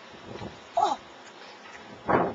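A single short yelp, high and falling quickly in pitch, a little under a second in, over a low, quiet background.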